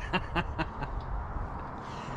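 A few light clicks and knocks in the first second as a jet's cockpit control stick and its linkages are moved by hand, over a steady low rumble.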